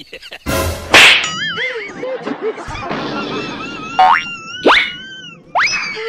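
Cartoon sound effects added in editing: a sudden noisy whoosh-hit about a second in, then a wobbling boing, and three quick rising whistle glides near the end.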